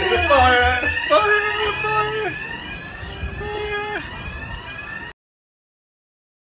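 Building fire alarm sounding a fast-repeating rising sweep, with voices over it. It grows fainter, then cuts off about five seconds in.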